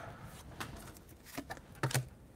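Faint handling of Pokémon trading cards: a few light clicks and rustles as cards from a freshly opened booster pack are shifted in the hand.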